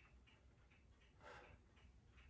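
Near silence: room tone with faint, regular ticking at about four ticks a second, and one soft breath a little over a second in.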